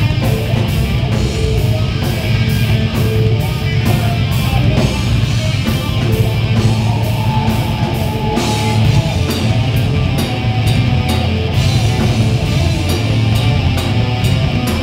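Rock band playing live and loud: electric guitar, bass and a drum kit, with cymbals struck in a steady beat of about three a second.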